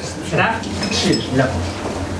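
Light clinking of tableware, a few short high clicks around the middle, under a quieter voice speaking in the room.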